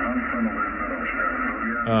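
A distant station's voice received on the 40-metre band through an Icom IC-756 transceiver's speaker: thin, narrow-band radio speech over a steady low hum.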